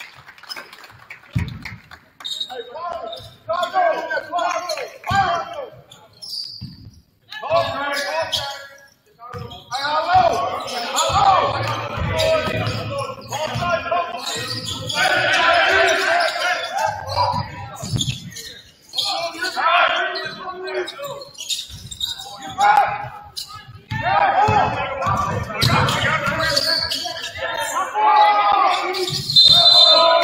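A basketball bouncing on a hardwood gym floor during live play, with players and coaches calling out on the court and their voices echoing in the gymnasium.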